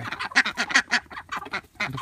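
Young domestic ducks quacking: a quick run of short calls through the first second, then a few scattered ones. The owner takes the way one of them sounds as a sign that it is a drake.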